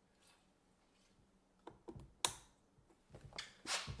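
Light plastic clicks and handling noises from the shower hose's quick-connect fitting being worked on the LifeSaver jerry can's spout, with one sharp click a little past halfway.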